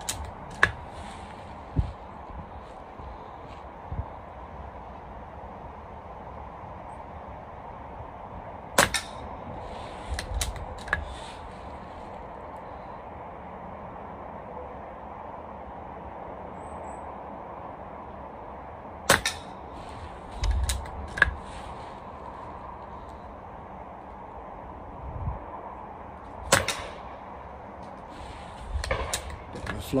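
BSA Ultra JSR pre-charged pneumatic air rifle fired three times, about ten seconds apart, each shot a single sharp crack. Softer clicks follow the shots as the action is worked and the rifle is reloaded.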